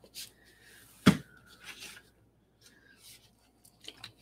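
Plastic paint squeeze bottle set down on the work table with one sharp knock about a second in, amid faint handling rustles and small clicks.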